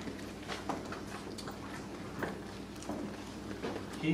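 Quiet room tone: a steady low electrical hum with scattered faint clicks and rustles.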